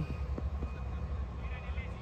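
Open-air ambience at a floodlit cricket ground: a steady low rumble with faint distant voices of players on the field, rising briefly near the end.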